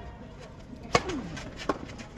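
Tennis ball struck hard by a racket on a serve, a single sharp crack about a second in, followed by lighter ball hits near the end as the rally gets going.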